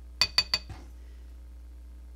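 Three quick light clinks of small hard objects knocking together, each with a brief ringing, bunched within half a second near the start. The objects are makeup items, such as a brush and a compact, being handled.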